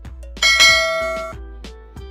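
Background music with a loud bell-like chime struck about half a second in, ringing with many overtones and fading away over about a second, then soft plucked notes carry on.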